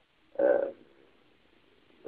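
A pause in a man's lecture, broken by one short vocal sound about half a second in, like a brief syllable or 'hmm'.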